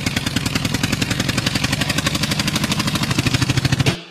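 Recorded tractor engine sound effect opening a dance track: an engine running in a fast, even putt-putt rhythm that grows a little louder and cuts off suddenly near the end.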